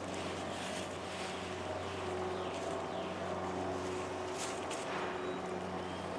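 Steady, even drone of a motor or engine, one low pitched hum with overtones that does not change.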